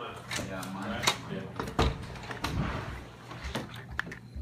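Indistinct voices of people talking, broken by three or four sharp knocks, over a steady low hum.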